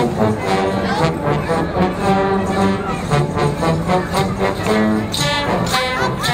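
A brass band playing a tune, with steady held notes, as it marches in a street parade, with voices from the crowd mixed in.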